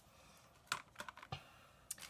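A few faint, light clicks and taps as cellophane-packaged scrapbooking embellishments are set down on a table and picked up.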